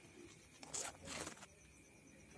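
Dry paddy straw rustling and scraping against the camera as it is pushed into the straw bed: two short scratchy scrapes in quick succession, the second slightly longer.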